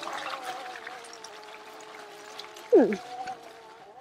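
Oset 24R electric trials bike's motor whining steadily under way, its pitch easing down slightly and then rising again near the end.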